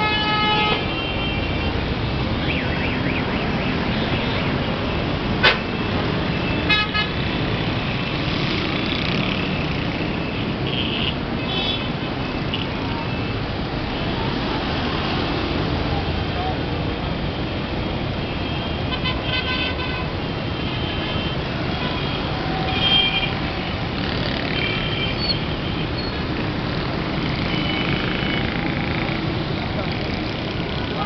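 Heavy city street traffic of auto-rickshaws, motorcycles and buses: a steady din of engines and road noise, with vehicle horns honking several times, near the start, around 7 seconds, around 20 seconds and around 23 seconds.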